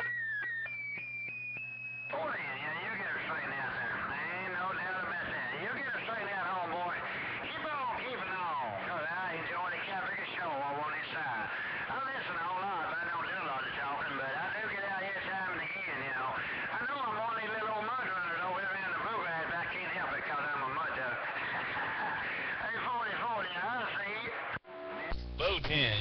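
Another CB station's transmission heard through a Cobra 2000 base station's speaker: a short high tone, then a man's voice coming in strong on the radio, with a steady low hum underneath. The transmission cuts off about a second before the end.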